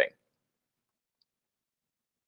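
The last trace of a man's word, cut off abruptly, then dead digital silence.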